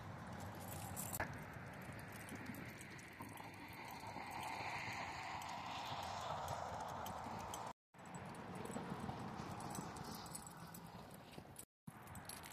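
Footsteps on hard ground over a faint outdoor background, cut off briefly twice.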